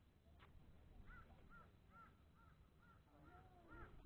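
A bird calling faintly in a near-silent moment: a run of about eight short, arched notes, two or three a second, starting about a second in and lasting until near the end. There is a single faint click shortly after the start.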